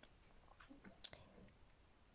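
Near silence broken by one short, sharp click about a second in and a few fainter ticks after it.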